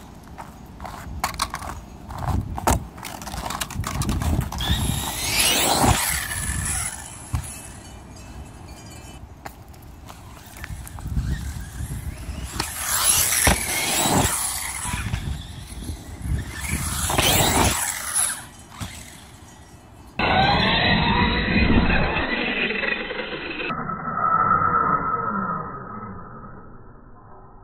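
Redcat Avalanche XTE RC monster truck's brushless motor on 4S whining up and down in several bursts of throttle, with tyre noise and knocks from the truck hitting ground. About twenty seconds in, the sound turns suddenly muffled and dull.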